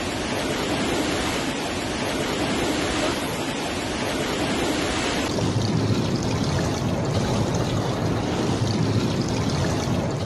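Flash floodwater rushing in a torrent down a street, a loud steady rush of water. About halfway through the sound changes suddenly to a duller, deeper rush.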